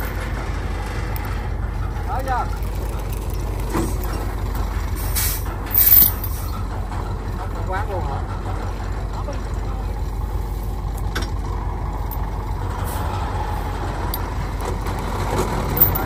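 Heavy diesel engine idling steadily, with a brief loud hiss about five to six seconds in.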